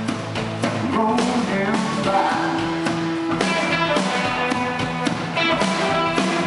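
Live rock band playing: electric guitars and bass over drums, with steady drum hits throughout and a held note in the middle.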